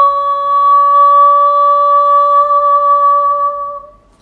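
A woman singing one long, steady wordless note, held for about three and a half seconds and fading away near the end.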